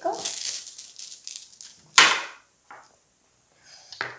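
Zombie Dice dice rattling as they are handled, then one sharp knock about two seconds in, the loudest sound here.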